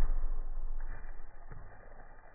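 A heavy dead log hitting the leaf-covered forest floor with a dull thud that dies away, then a smaller knock about a second and a half in as it settles. It is a falling-branch test, and the rope line has not stopped the log.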